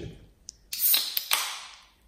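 Aluminium cider can opened by its pull tab: a small click, then a sharp crack with a hiss of escaping gas, a second crack, and a hiss that fades out.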